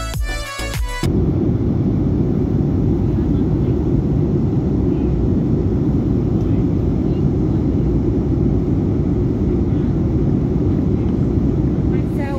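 Music that cuts off about a second in, giving way to the steady, loud, low roar of a jet airliner's cabin in flight: engine and airflow noise heard from a window seat.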